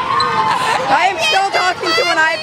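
Girls' high-pitched voices without clear words, sliding up and down in pitch in long, drawn-out sounds.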